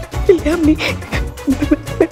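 A goat bleating in short, wavering cries, twice, over comic background music.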